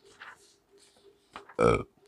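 A man's short, low "uh" about a second and a half in, a hesitation sound, loud and brief. Before it there is faint rustling of paper from the pages of a book being handled.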